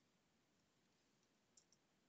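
Near silence: room tone, with two faint computer-mouse clicks in quick succession about one and a half seconds in.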